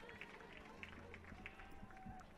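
Near silence: faint outdoor field ambience with a few faint ticks and faint distant voices.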